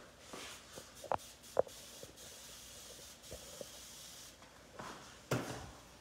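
Quiet handling noise: a few light clicks and rustles, the two clearest about a second and a second and a half in, over a faint steady hiss.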